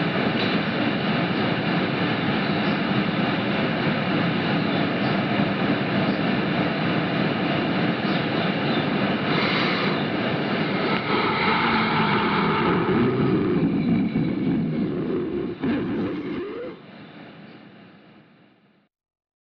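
A steady, dense droning noise with faint held tones, like a jet engine running, used as an outro within a noise/black metal recording; it fades away over the last two seconds or so.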